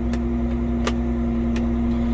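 2018 John Deere 9570RX's Cummins 15-litre diesel engine running steadily at about 1,260 rpm, heard from inside the cab as a steady hum with a strong low tone while the tracked tractor creeps off in gear. Two short sharp clicks come about a second in and again shortly after.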